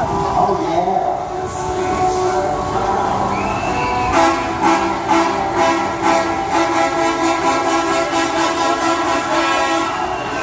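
Loud music with long held chords and a steady, fast beat, starting about four seconds in, over the voices of people on the ground.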